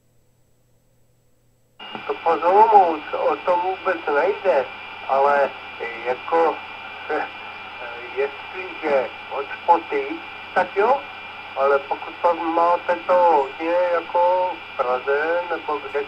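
K-PO DX 5000 CB mobile radio receiving an FM voice transmission. It is silent for about two seconds, then a signal comes on suddenly and a voice talks through the set's speaker over a steady hiss.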